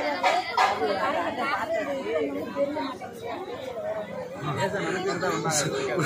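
Several people talking at once, overlapping voices in a steady chatter with no single clear speaker.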